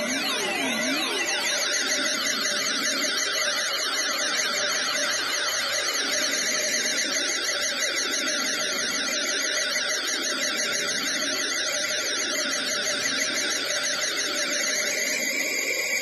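Behringer Edge semi-modular analog synthesizer playing a dense electronic noise drone: many fast, overlapping pitch sweeps rising and falling like a swarm of chirps, at a steady level. The high sweeps thin out near the end.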